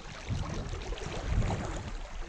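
Creek water running and rippling, with uneven low rumbles of wind on the microphone.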